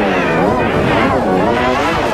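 Heavily pitch-shifted, distorted soundtrack audio: a loud, layered wailing tone whose pitch swoops down and back up about once a second.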